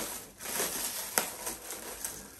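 Plastic packaging crinkling and rustling as it is pulled away from a boxed toy truck, with a sharp click a little after a second in.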